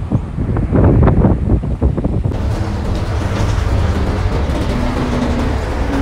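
City bus running: a loud low engine and road rumble. About two seconds in it changes abruptly to the steadier drone heard inside the bus cabin.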